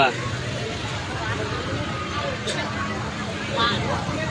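A vehicle engine running steadily, with faint voices behind it.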